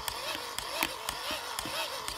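Hand-crank dynamo of an Ideation GoPower solar crank radio-flashlight being wound to charge its battery: its gearing gives a run of light, uneven clicks, a few a second.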